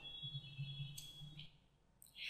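Faint room tone with a low hum and a single soft click about a second in.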